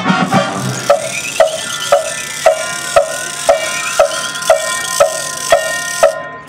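A high school marching band's front-ensemble percussion plays a steady, clock-like tick, about two strokes a second, over held, ringing chords. A low brass chord dies away at the start.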